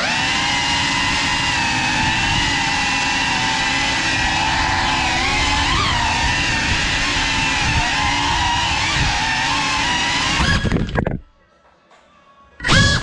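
Cinelog 35 cinewhoop drone's motors and ducted propellers whining steadily in flight, the pitch wavering slightly with the throttle. The sound cuts off suddenly about eleven seconds in.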